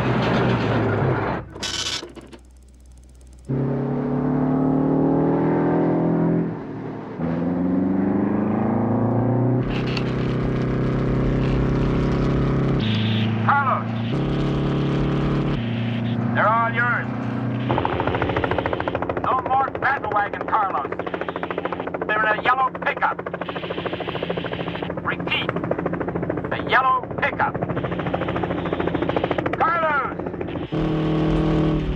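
A semi truck's diesel engine pulling hard, its pitch climbing in steps through several gear changes. This is followed by a dense action-film mix of engine noise and sharp repeated cracks like gunfire.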